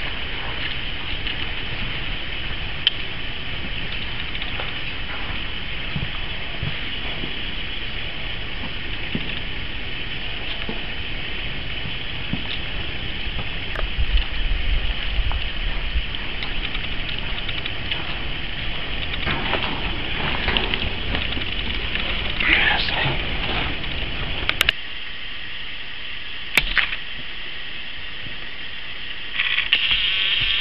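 Steady high hiss of background ambience with scattered crackling, like footsteps on a debris-strewn shed floor. Two sharp clicks come near the end.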